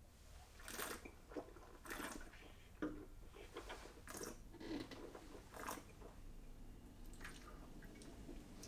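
A wine taster sipping red wine and working it in the mouth: a series of faint slurps and wet mouth sounds as air is drawn through the wine. A light knock about three seconds in as the glass is set down on the table.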